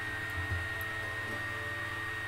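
Steady background hum and hiss with a thin, high, constant whine: the electrical and room noise of the recording setup, with no other event standing out.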